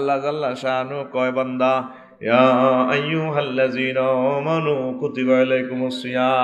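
A man's voice reciting a Quranic verse in a melodic, drawn-out chant, in long held phrases with a pause for breath about two seconds in.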